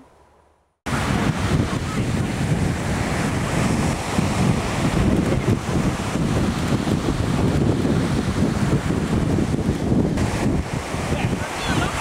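Strong wind buffeting the microphone over the wash of breaking surf, starting abruptly about a second in after near silence and running on steadily and loud.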